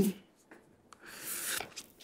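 The end of a man's spoken word, then a quiet pause in his speech with a couple of faint clicks and a soft hiss lasting about a second before he speaks again.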